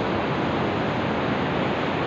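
Steady rush of ocean surf breaking on the beach, with wind on the microphone.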